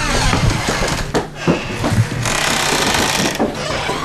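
Clattering and rustling handling noise from a handheld camera carried on the move, mixed with footsteps, with a stretch of rushing hiss in the second half.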